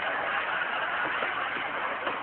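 A heavy lorry's engine running as a steady, noisy drone while the truck squeezes tightly past a parked car.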